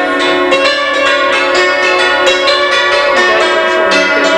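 Bell-like instrumental music: a continuous melody of struck, ringing notes over sustained tones.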